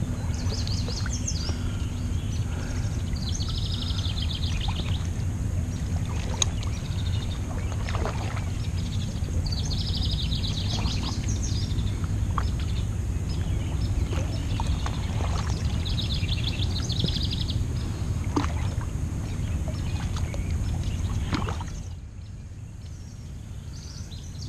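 A bird sings a short trilled phrase about every six seconds over a steady low rumble. The rumble cuts off near the end, and faint scattered clicks can be heard throughout.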